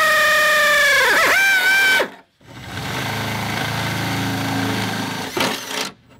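Cordless drill boring holes through the car's sheet-metal floor for the roll bar's rear base plates: the motor whines steadily at high speed, its pitch dipping about a second in, and stops abruptly about two seconds in. After a short pause a second, lower-pitched and rougher run of drilling goes on until just before the end.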